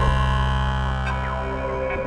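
Experimental electronic synthesizer drone music: several steady tones layered and held together, with a couple of short falling pitch sweeps in the second half.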